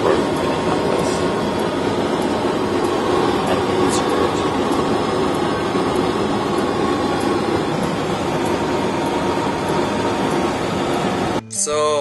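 A steady drone with a rushing noise, of the kind heard inside a moving vehicle's cabin. It cuts off suddenly near the end, where guitar music and speech take over.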